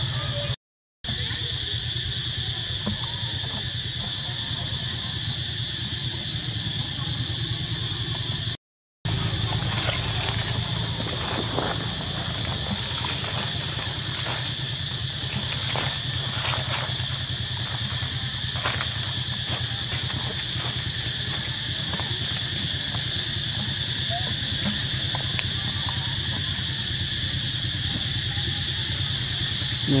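Steady high-pitched drone of insects over a low steady hum, cut by two brief dropouts to silence, about a second in and about nine seconds in. Faint scattered ticks and rustles come through the drone now and then.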